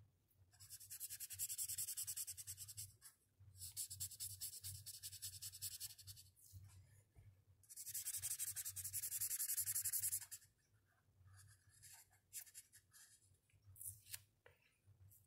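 Felt-tip marker scribbling rapidly back and forth on paper as an area is coloured in with hatching strokes, in three long spells of quick scratchy strokes with short pauses, then a few lighter strokes near the end.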